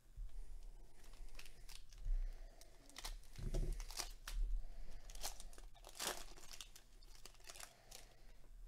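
Plastic wrapper of a baseball trading-card pack crinkling and tearing as it is opened by hand, in a run of irregular crackles.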